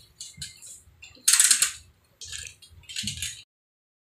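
Metal hand tools clattering and scraping as they are taken from a hanging tool holder: a few short rattles, the loudest about a second in, stopping abruptly after about three and a half seconds.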